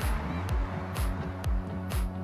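Background music with a steady beat: a bass drum and a bass line, with a sharp high hit about twice a second.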